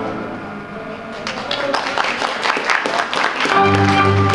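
A held electronic-keyboard chord fades away, then a couple of seconds of audience clapping; near the end, the keyboard accompaniment starts up again loudly.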